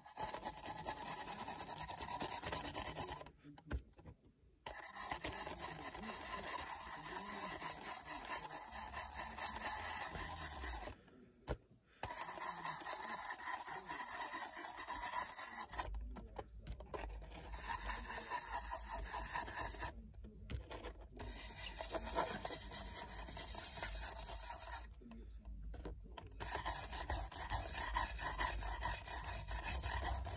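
A stiff paintbrush scrubbing dry pastel chalk powder into the ribbed plastic roof of an HO scale model boxcar: a steady scratchy rubbing, broken by a few short pauses.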